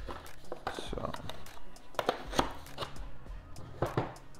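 Hands handling a small cardboard box and its contents: irregular rustles, scrapes and light knocks of cardboard and a small bag of hardware, with a sharper knock near the end as the box is closed and set down.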